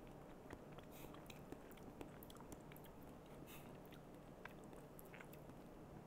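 Near silence: room tone with a few faint, scattered soft clicks.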